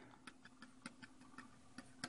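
Faint, irregular light ticks of a stylus tapping and writing on a graphics tablet, about ten small clicks in two seconds, over a faint steady hum.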